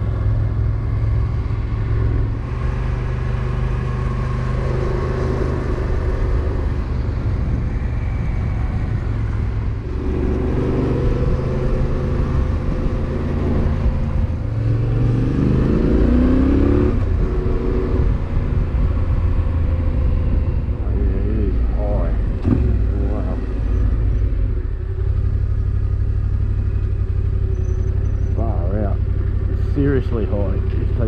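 Motorcycle engine running steadily while riding, heard from the bike's camera, with the revs climbing about fifteen seconds in.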